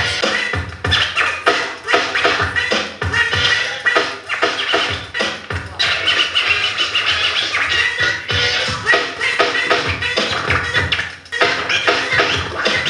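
DJ scratching a vinyl record on a turntable, rapid back-and-forth scratches cut in through the mixer over music.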